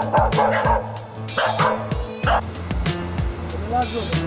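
Dog barking in two short bouts, one at the start and one about a second and a half in, over background music with a steady beat.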